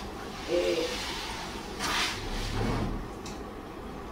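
Objects being moved about on a cupboard shelf: a short rush of scraping noise about halfway through and a small click a little later. A brief murmur of voice comes about half a second in.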